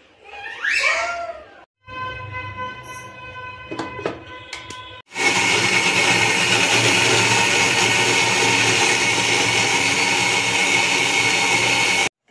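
Electric mixer grinder starting about five seconds in and running steadily at full speed, its steel jar grinding onion, garlic and green chillies into a paste.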